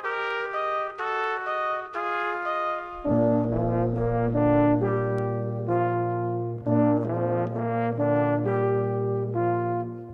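A brass quintet of two trumpets, French horn, trombone and tuba playing sustained chords that change step by step. The upper voices play alone at first, and the low brass, tuba included, comes in about three seconds in.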